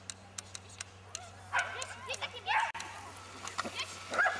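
Dog giving high-pitched yips and barks, a cluster of them in the middle and one more near the end. A run of sharp clicks comes in the first second, over a low steady hum.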